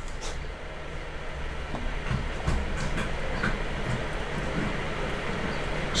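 Steady low background hum with a few faint, scattered clicks from a computer mouse and keyboard.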